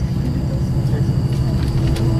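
Steady low rumble of a moving tour bus's engine and road noise, heard from inside the passenger cabin.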